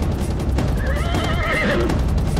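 A horse neighs, one wavering call lasting about a second and starting a little before the middle, over rapid galloping hoofbeats.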